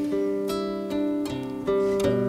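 Acoustic guitar playing a gentle picked chord pattern, with a new stroke about every half second over ringing, sustained notes.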